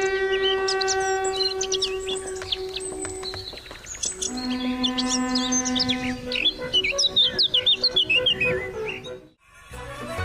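Songbirds chirping and twittering over long, steady held musical notes. The first note lasts about three and a half seconds and a lower one follows about a second later. The sound cuts out briefly near the end.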